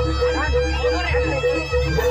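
Live East Javanese jaranan gamelan music played loud: a reedy slompret (shawm) melody bends in pitch over a quick, even pattern of struck metal notes at about four a second, with a heavy drum and gong beat underneath.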